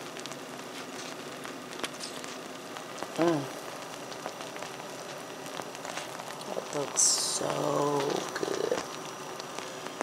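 Faint, steady crackling and bubbling of a strawberry dump cake fresh out of the oven, its fruit filling still hot. Brief low murmurs of a woman's voice come about three seconds in and again near the end.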